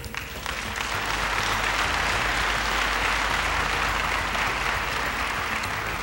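Audience applauding, swelling up within the first second, holding steady, then easing slightly near the end.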